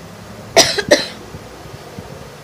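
A woman coughing twice in quick succession into her hand, a little over half a second in.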